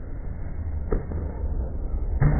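A badminton racket striking a shuttlecock once, a sharp crack about a second in, over the steady low rumble of the hall.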